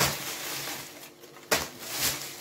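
Plastic cat-food pouches rustling as a handful is set down on a table, with a sharp crinkle about one and a half seconds in.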